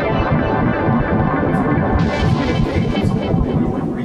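Electronic synthesizer music with dense sustained chords, joined about halfway through by a hissing wash of noise.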